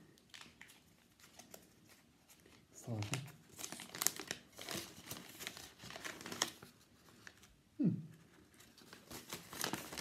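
Paper wrapping crinkling and rustling in irregular bursts as it is pulled off a beer bottle.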